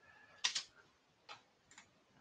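A few faint computer clicks, mouse or keyboard, the first about half a second in and the loudest, then two softer ones near the end.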